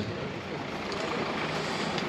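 A car driving slowly past: a steady engine and tyre noise that grows slightly louder.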